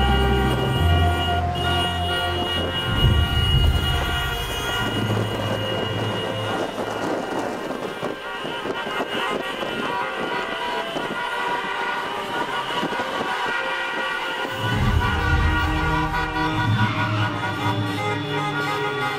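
Many car horns honking together, their long held notes overlapping, with a low rumble of traffic that swells and fades underneath.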